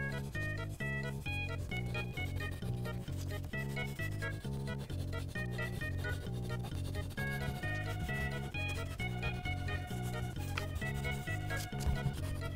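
Light background music with a steady beat, with the faint scratching of a colored pencil shading paper beneath it.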